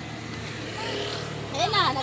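Voices: faint talk in the background, then a person speaking loudly and close by from a little before the end. A steady low hum runs underneath.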